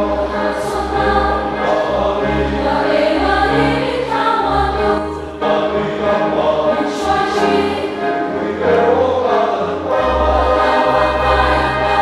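Large mixed congregation of men and women singing a hymn together in sustained notes, with a brief pause between phrases about five seconds in.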